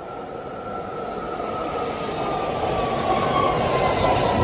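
A BART Fleet of the Future train pulls into an underground station platform. Its running noise grows steadily louder as it nears, under a whine that slowly falls in pitch.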